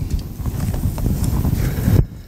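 Pages of a Bible being leafed through and handled on a wooden pulpit, picked up close by the pulpit microphone: a quick, uneven run of soft taps and rustles.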